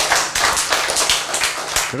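Audience clapping: many quick, irregular hand claps from a crowd.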